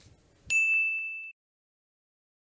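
A single high, bell-like ding about half a second in, ringing for nearly a second as it fades away.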